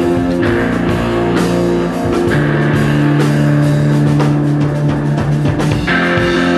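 Live psychedelic rock band playing electric guitar and drum kit, with long sustained notes over regular drum hits. A low note is held for several seconds in the middle.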